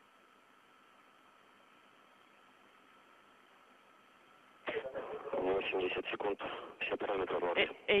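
Faint hiss of an open radio link with a thin steady tone, then, a little past halfway, a voice over the link that sounds thin and narrow, like a telephone line: mission-control flight communications.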